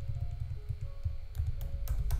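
Computer keyboard being typed on, with a cluster of sharp key clicks in the second half, over soft background music.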